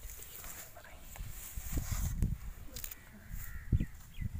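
Low rumbling handling noise with a short thump near the end, as carrots and their leafy tops are handled, with faint animal calls in the background.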